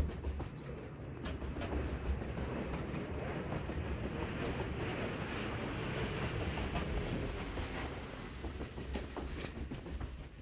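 Footsteps going down concrete stairs in a stairwell, over a steady rumbling noise that swells through the middle and fades near the end.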